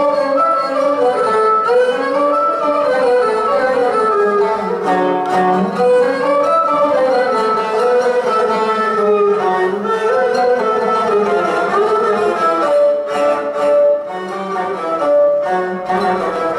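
Classical kemençe (Turkish bowed fiddle) and oud playing a zeybek tune together, the bowed melody gliding between notes over the plucked lute.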